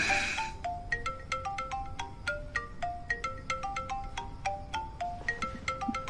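Mobile phone ringing with a marimba-style ringtone: a quick, repeating melody of short struck notes, about four or five a second. A brief hiss sounds at the very start.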